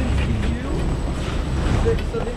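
Steady low rumble of a Leitner detachable chairlift's station machinery as a bubble-canopy chair comes around to the loading point, with people's voices over it.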